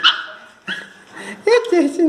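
Small pinscher dogs barking and yelping: a loud sharp yelp right at the start, then a few shorter calls later.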